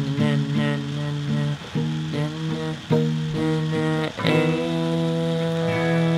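Acoustic guitar with a capo strummed in chords, changing every half second to a second, then a last chord struck about four seconds in and left ringing.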